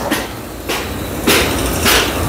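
Footsteps scuffing on a concrete floor, about one every half second, over a low rumble.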